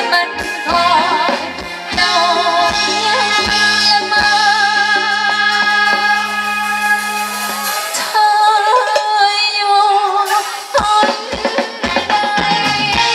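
Live Thai ramwong band music with singing: long held, wavering notes over sustained bass and drums. The drum strikes thin out after the first second or so and come back strongly near the end.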